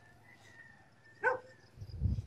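A dog barks once, a single short bark a little over a second in, over an otherwise quiet background with a faint steady high tone.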